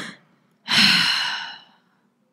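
A woman lets out a long, loud, acted sigh, a breathy exhale that fades away, performing the "great sigh" of the passage she is reading. It follows an intake of breath at the very start.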